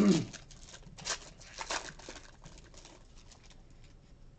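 Foil trading-card pack (2016 Panini Unparalleled football) being torn and opened by hand: a run of short crinkling rustles from about one to three and a half seconds in. A brief throat-clearing sound comes at the very start.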